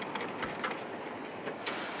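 Chevrolet Vega's door being unlatched and swung open: a few sharp clicks, with a low thump about half a second in, over steady background hubbub.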